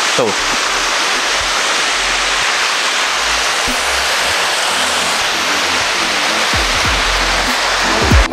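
Steady rush of a waterfall, water falling down a rock face, holding an even level throughout, with faint music underneath.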